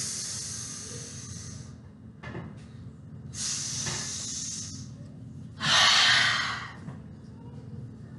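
A woman sniffing the air in long, noisy breaths through the nose, three times, the last one the loudest, acting out smelling a pizza baking.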